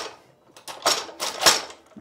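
The clamping arm's two metal tubes being pushed into their sockets in the saw base: a knock at the start, then a run of several metallic clicks and rattles in the middle as they slide in and seat.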